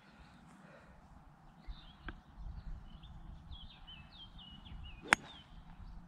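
A golf club striking a ball off the tee: one sharp crack about five seconds in.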